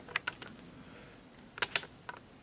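Handling noise: a few light clicks and taps, a small cluster just after the start and another near the end.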